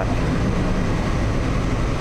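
Steady low rumbling background noise with a faint low hum, even throughout, with no distinct events.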